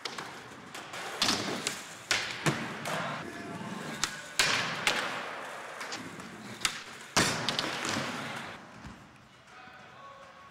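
Skateboard wheels rolling on a skatepark floor, broken by several sharp clacks and thuds of the board popping and landing, which echo in a large hall.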